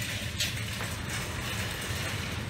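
Steady low hum and background noise of a shop interior, with one faint click about half a second in.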